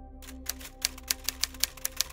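Typewriter key-strike sound effect, a quick uneven run of sharp clacks, over soft ambient background music.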